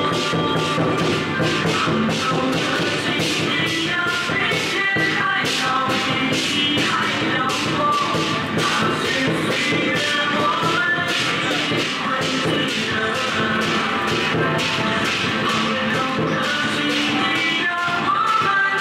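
Traditional Taiwanese temple procession music: a steady percussion beat of cymbal-like strikes under a wavering high melody, loud and continuous.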